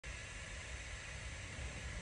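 Faint steady background hiss with a low rumble inside a van's cabin, with no distinct events.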